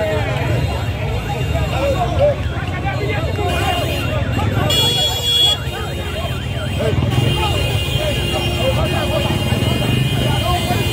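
Street demonstration: many crowd voices at once over the steady running of motorcycle and vehicle engines, with a short high tone about five seconds in.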